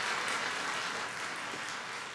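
Applause dying away after the guest strikes the pose: an even patter of clapping that slowly fades.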